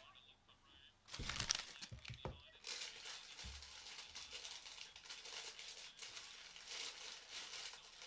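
Faint crackling, rustling noise that starts suddenly about a second in and then carries on as an unsteady crackle.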